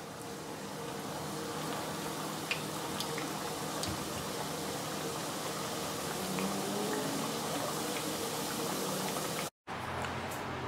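Two pastelillos deep-frying in a pot of hot oil: steady sizzling with a few scattered pops and crackles.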